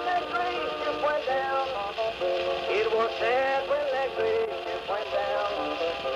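A late-1920s Edison Blue Amberol cylinder record playing on an Edison cylinder phonograph: old-time country music with a wavering, gliding melody line. The sound is thin, with little bass.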